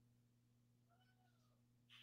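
Near silence: a faint steady low electrical hum, with one very faint short call that rises and then falls in pitch about a second in.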